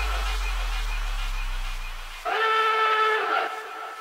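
Breakdown in a guaracha DJ mix, with no drums. A deep held bass note fades out, and just after two seconds in a held horn-like chord sounds for about a second before tailing off.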